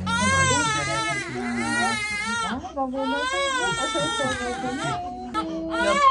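A three-month-old baby crying hard while getting vaccination shots: a run of loud, high cries, each rising and falling in pitch and lasting about a second, with short catches of breath between.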